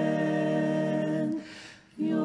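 Slow music of voices humming a long held chord. The chord breaks off about one and a half seconds in, leaving a brief quiet gap before it starts again at the very end.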